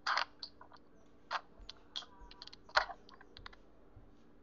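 Irregular light clicks and clatter: a loud one right at the start, then several more spread over the next few seconds with smaller ticks between them.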